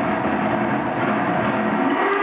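Loud harsh noise music from a live electronic set: a dense, steady wall of distorted sound with a few held tones in it.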